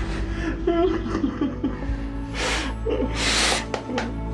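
A man sobbing with his face pressed into another man's shoulder: broken crying sounds, then two loud wet, snotty sniffs or gasping breaths in the second half, over steady background music.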